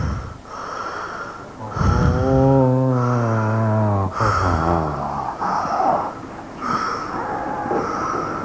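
A man's wordless vocal sounds: one long drawn-out tone about two seconds in, then shorter wavering sounds.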